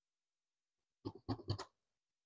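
Large tailoring scissors snipping through a paper blouse pattern: a quick run of about four short, crisp cuts, starting about a second in.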